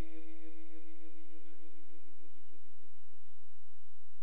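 The tail of a male Quran reciter's long held note through a microphone and loudspeakers, dying away over the first second or two. It leaves a faint lingering tone, low hum and a steady faint high whine during the pause.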